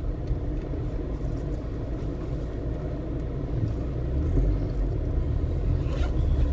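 Steady low rumble of a car's engine and running gear heard from inside the cabin as the car idles and edges forward slowly, growing slightly louder about four seconds in.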